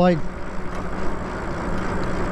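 Riding noise on a Lyric Graffiti e-bike in motion: wind rushing over the microphone and tyre rumble on asphalt, with a low steady hum underneath.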